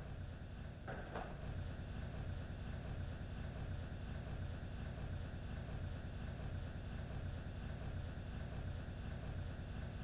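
Faint steady low hum and hiss of room tone.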